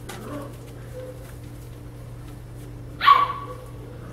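A puppy gives a single short, high-pitched yelp about three seconds in. Faint rustling of paws on newspaper and a steady low hum sit underneath.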